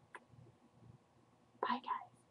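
A woman's short untranscribed vocal sound, a word or exclamation, near the end, after a faint click just after the start; otherwise quiet room tone.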